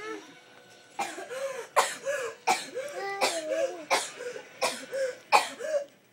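A young child coughing in a run of about eight harsh coughs, roughly one every 0.7 seconds, each ending in a short voiced sound. The coughing starts about a second in.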